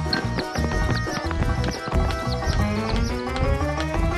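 Upbeat instrumental cartoon music with busy, quick percussion hits and a rising glide in pitch near the end.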